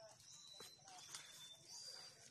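Near silence: faint outdoor background with a few thin, high, steady tones and two light clicks.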